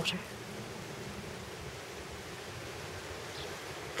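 Quiet, steady background hiss with no distinct sound in it: the room tone of the greenhouse between words.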